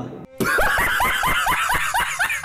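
Laughter: a fast, even run of short rising "ha" bursts, about six a second, starting a moment in.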